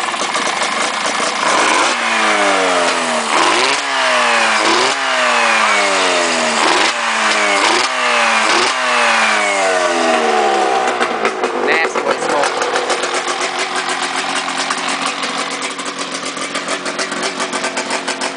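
Yamaha 540 two-stroke snowmobile engine in a homemade go-kart, running and being revved by hand about seven times, each rev climbing quickly and falling back, then settling to a steady idle about twelve seconds in.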